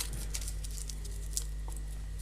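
Faint, sparse crinkling and ticking of a small piece of aluminium foil being squeezed and rolled between fingertips into a tiny ball, over a steady low electrical hum.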